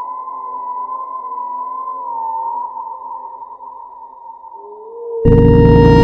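Eerie synthesized background music: a high, slightly wavering sustained tone over a quiet low drone. About five seconds in, a much louder, dense sustained chord with heavy bass comes in abruptly.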